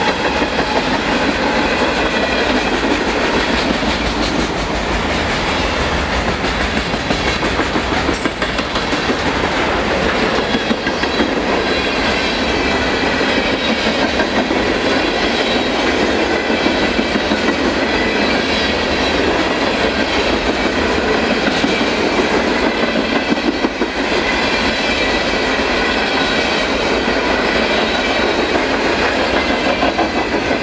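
Empty freight cars of a trash-container train rolling past at speed, with a steady noise of steel wheels running on the rails.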